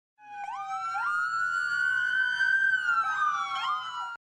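Siren-like electronic tones from an intro sound effect: the pitch jumps up in two steps during the first second, then several tones hold and slowly glide past one another before cutting off.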